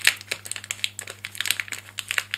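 Clear plastic wrapper on a pack of craft papers crinkling as hands peel it open: a quick, irregular run of sharp crackles.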